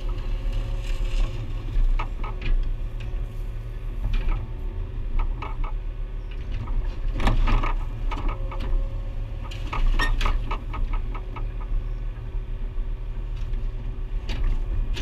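Mini excavator's diesel engine running steadily, heard from inside the cab, with irregular clunks and clatters in groups as the bucket digs into soil and rubble.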